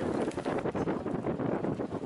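Wind buffeting the microphone: a loud, rapidly fluttering rush with no clear tone.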